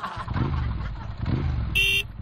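Motor scooter engine sound effect revving up and down twice, then a short horn beep near the end.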